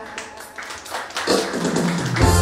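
A few scattered taps and clicks, then the live band's instruments come in about halfway through, starting the song's intro.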